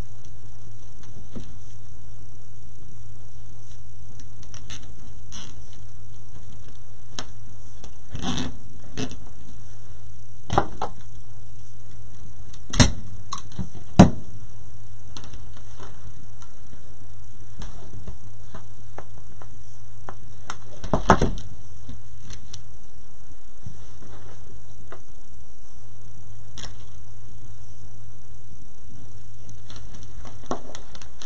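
Burlap and mesh wreath pieces rustling and crinkling as hands tuck them into a wreath board, with a few sharp clicks and knocks, two of them loudest, over a steady electrical hum and hiss.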